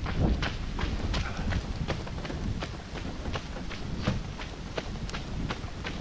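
Running footsteps: a runner's quick, even footfalls, about three a second.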